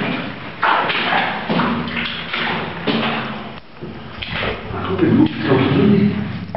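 Indistinct talking, with several thuds.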